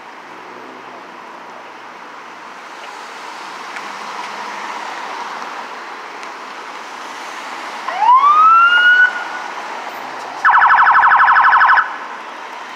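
Police cruiser siren blipped over steady street noise: one rising whoop about eight seconds in, then near the end a rapid pulsing warble lasting about a second and a half. It is used to move people along and clear the area.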